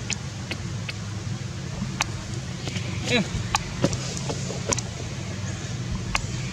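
Steady low mechanical hum, like a motor running, with scattered short sharp clicks over it.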